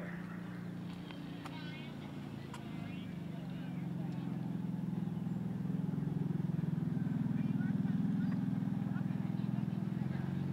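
A motor vehicle's engine running with a low, steady hum that grows louder from about four seconds in and stays up to the end.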